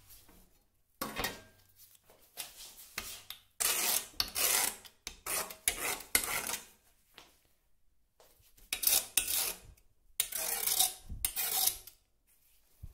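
A screw-tipped scriber scratching lines into a metal sheet: a series of about six scratching strokes, each from half a second to a second and a half long, with short pauses between.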